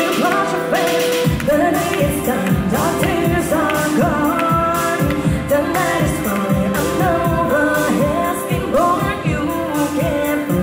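A woman singing a pop song live into a microphone, backed by a small band on keyboard and acoustic guitar; a steady beat comes in just over a second in.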